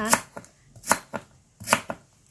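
Kitchen knife slicing through fresh lemongrass stalks onto a thick round wooden chopping block: several sharp chops, unevenly spaced, the strongest about a second apart.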